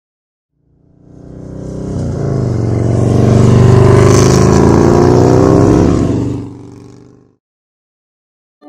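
Motorcycle engine revving as an intro sound effect: it swells in about a second in, climbs in pitch and loudness to a peak a few seconds in, holds, then fades away near the end.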